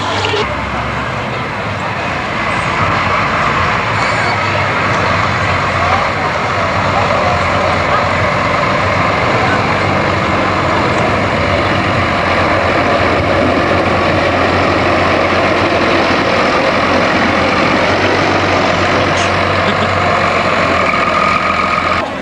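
Large farm tractor's diesel engine running steadily at close range, a continuous low hum and rumble with no breaks.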